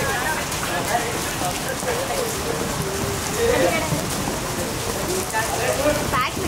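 Steady rain falling, with voices calling out over it at intervals.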